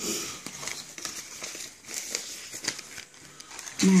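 Paper rustling and crinkling as sheets of junk mail are handled and stuffed into a brown paper envelope, in short uneven spells that die down about three seconds in.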